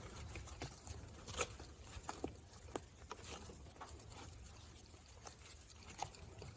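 Faint, scattered clicks and rustles of a stroller harness strap and its clip being handled and fed through a slit in the seat back. The sharpest click comes about a second and a half in, over a low steady hum.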